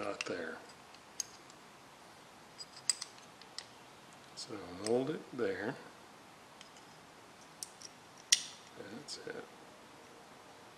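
Scattered small, sharp metallic clicks from a small metal-cased radio component, its wire leads and tools being handled, with the loudest click a little after eight seconds. Brief low mutters are heard at the start, in the middle and near the end.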